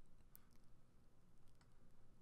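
Near silence: faint room tone with a couple of faint clicks, one shortly after the start and a fainter one later.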